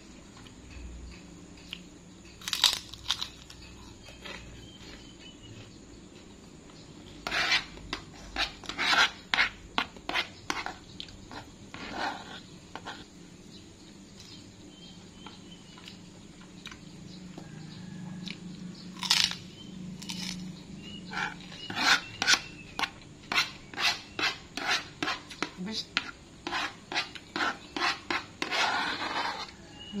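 Metal spoon scraping and clicking against a plastic bowl as rice is scooped up, in scattered taps at first and then a quick run of scrapes and clicks in the second half as the last grains are gathered.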